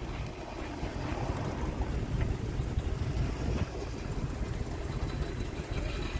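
Classic Chevrolet Nova's engine running low and steady as the car rolls slowly across the lot.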